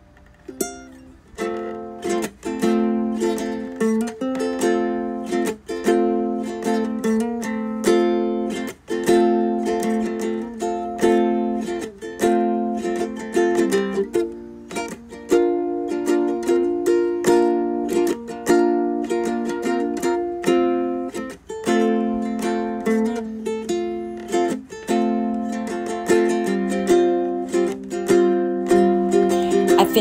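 Background music played on plucked strings, a light strummed tune with a steady pulse that starts about a second in.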